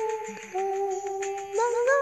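Karaoke accompaniment: a single sustained melody line holds a note, steps down about half a second in and rises again near the end, over light ticking percussion.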